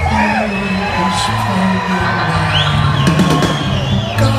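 Live rock band playing, heard from within the concert crowd: acoustic guitar over a steady bass line and drums, with whoops and cheers from the audience.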